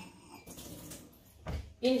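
Faint handling sounds as a plastic mixing bowl is moved on a kitchen counter: a brief light rustle, then a soft low knock about one and a half seconds in.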